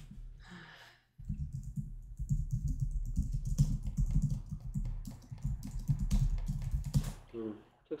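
Computer keyboard being typed on: a quick, continuous run of keystrokes from about a second in until shortly before the end, as a sentence is typed.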